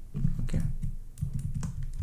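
A few scattered, irregular clicks of computer keys as text is copied and pasted.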